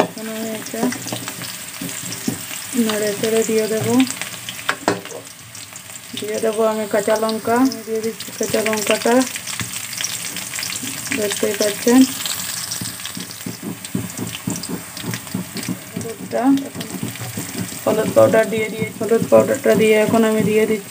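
Sliced onions sizzling and crackling in hot oil in a wok, with a metal spoon stirring and scraping the pan in strokes that come and go.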